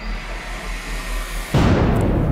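Edited-in sound effect for a sudden costume change: a rush of noise for about a second and a half, then a sudden deep boom, with music under it.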